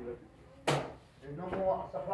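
A single sharp smack about two-thirds of a second in, followed by a voice talking.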